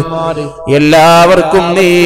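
A man chanting a prayer in a drawn-out, melodic voice, holding long notes, with a short break about half a second in. The voice is amplified through a stage microphone.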